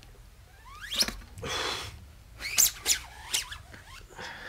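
A few short, sharp squeaks, each rising quickly in pitch, with a brief breathy hiss between the first and the second.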